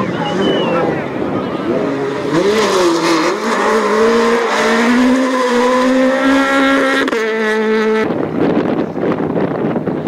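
Peugeot 208 rally car's engine revving hard on a gravel stage, the pitch dipping and rising through gear changes and then climbing steadily as it accelerates away. It holds one steady high note for about a second, which cuts off abruptly near the end, and another rally car's engine takes over.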